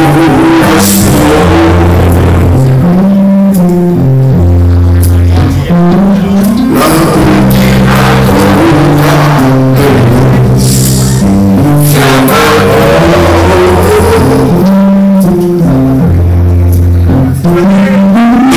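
Live rock band playing loudly: electric bass holding long notes over drums, with the recording pushed close to full scale.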